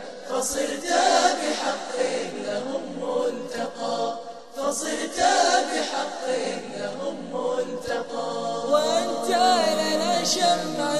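Background music: an Arabic nasheed sung by a chorus of voices, with long held, melismatic lines.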